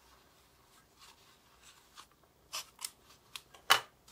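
Paper wrapping on a small package rustling and crinkling as it is handled, with a few short crisp crackles in the second half. The loudest sound is a sharp click or tap near the end.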